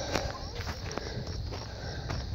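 Footsteps crunching on gravel and dry grass as someone walks, with irregular light crunches and low rumble from the moving phone. A faint high chirp repeats evenly in the background, about five times a second.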